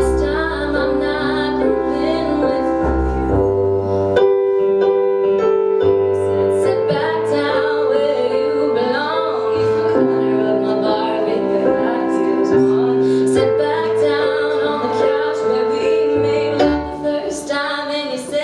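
A woman sings live, accompanying herself with sustained piano chords on a Roland electric keyboard. Her voice drops out briefly about four seconds in, leaving the keyboard alone.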